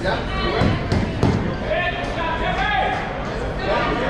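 People talking in the background of a large hall, with a few dull thuds about a second in from boxers sparring in the ring.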